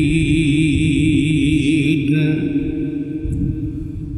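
A man's voice chanting a long held note of Quran recitation into a microphone, the pitch wavering up and down. It fades about two seconds in, leaving a softer steady hum.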